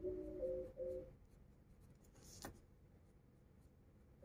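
A faint scratch of a pencil drawn across drawing paper, one short stroke a little past halfway. In the first second there is a short phrase of a few steady musical tones stepping in pitch.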